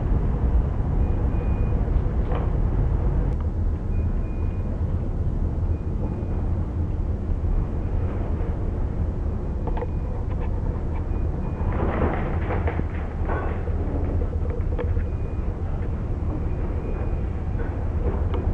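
Steady low rumble on the bridge of a container ship under way, with a short patch of clatter about twelve seconds in.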